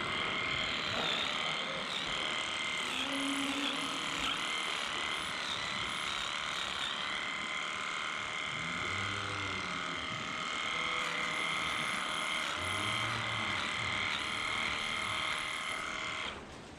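Small handheld electric tool running steadily as it works on a cow's tail: an even, high motor whine made of several tones.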